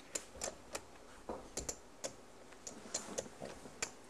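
Poker chips clicking together as a player handles them at the table: a scatter of light, irregular clicks.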